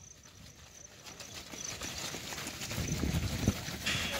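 Footfalls of a large group of runners setting off on a dirt track, a dense patter of many feet that grows steadily louder as they run past close by.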